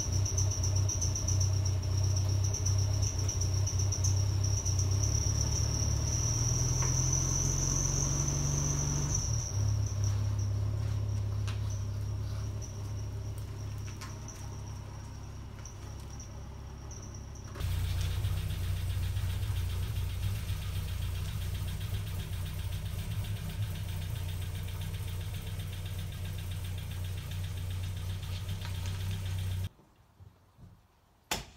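Vintage VW Beetle's air-cooled flat-four engine idling, then revving up about seven seconds in as the car pulls away, its sound fading as it moves off. A steady high tone sits over the engine for the first several seconds. After an abrupt change about halfway through, an engine is heard running steadily again.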